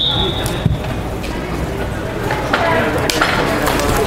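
A referee's whistle blast ends just after the start, then lacrosse sticks clack sharply a few times as players battle for the ball off the faceoff, with sideline voices shouting.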